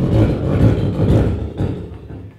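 Beatboxer making a long, deep bass sound into a handheld microphone held close to the mouth, trailing off near the end.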